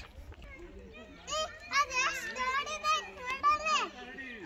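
Young children speaking in high-pitched voices, starting about a second in and stopping just before the end.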